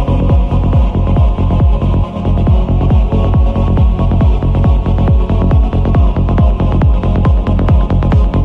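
Progressive psytrance: a steady four-on-the-floor kick drum, about two beats a second, with a rolling bassline between the kicks. The beat drops out briefly about two seconds in.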